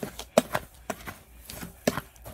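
Handling of a plastic tub of dried herbs: a scatter of about six sharp clicks and taps, the loudest about a third of a second in and just before the end.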